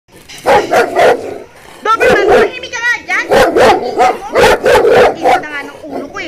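Dog barking over and over in quick runs of two or three barks, with short high whines between some of the runs.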